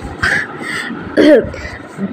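A person clearing their throat and coughing, in a couple of rough bursts followed by a short voiced sound.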